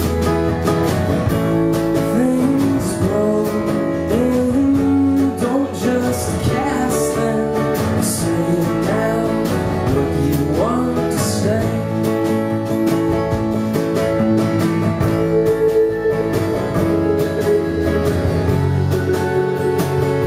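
Live indie-folk band playing: a strummed acoustic guitar over an upright bass, going on without a break.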